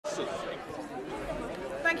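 Crowd of MPs chattering in the packed Commons chamber: many overlapping voices in a large hall. A woman's voice begins to speak near the end.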